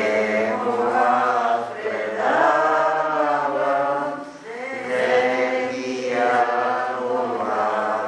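A choir chanting in long held phrases, with short breaths between them.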